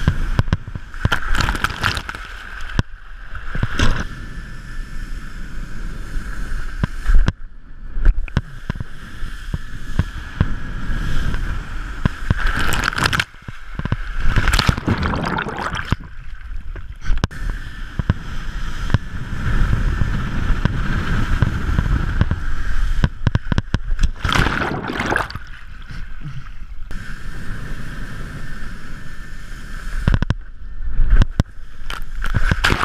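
Water rushing and splashing under a wakeboard as it skims and carves across a lake, with wind buffeting the microphone; the spray swells into louder surges several times.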